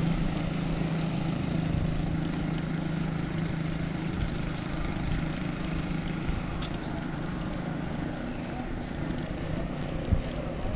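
Steady rushing wind and tyre noise from riding a bicycle on a paved road, with a continuous low hum underneath.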